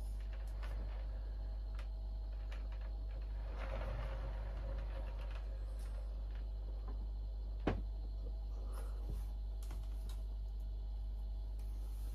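Quiet handling sounds as a large bonsai pot is turned by hand on a workbench: faint clicks, a short scraping stretch about four seconds in, and one sharper knock past the middle. A steady low hum runs underneath.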